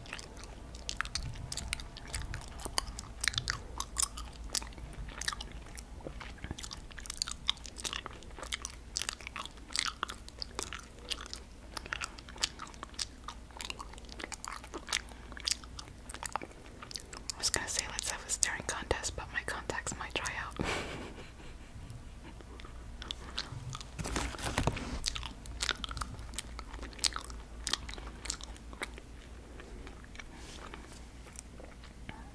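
Close-miked chewing of sour gummy worm candy: a steady run of small irregular mouth clicks and smacks, denser and fuller at about two-thirds of the way through and again a few seconds later.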